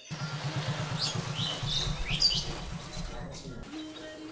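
Small birds chirping a few short, high calls, over a low, fast-pulsing rumble that fades out about three seconds in: outdoor street ambience.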